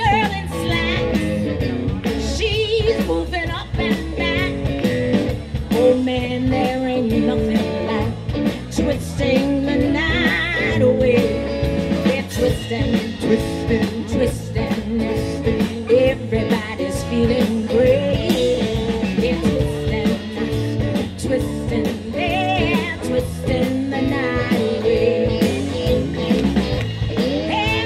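Live R&B band playing an upbeat song, a woman singing lead with vibrato over electric guitar, bass and drums.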